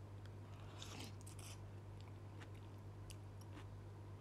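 Faint rustling and soft clicks close to the microphone, with a short hiss about a second in, over a steady low hum.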